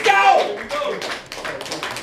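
Scattered hand claps and sharp taps from a small audience, irregular rather than in time, following a brief shouted voice at the start.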